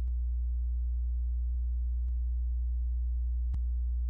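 Steady electrical mains hum from the recording setup, a low drone with a series of faint overtones, and a single faint click about three and a half seconds in.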